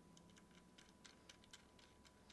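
Near silence with faint, irregular small ticks of a screwdriver turning a mounting screw into the side of a Samsung 840 EVO SSD.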